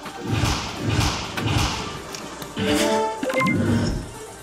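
Electronic dart machine's award sound effects after a high-scoring turn: a run of low thumps, then a short stepping electronic jingle about two and a half seconds in, over background music.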